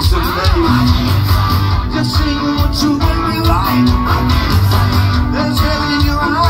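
Live rock band playing loudly: electric guitars, bass and drums with a steady beat, and a melodic line bending in pitch over it.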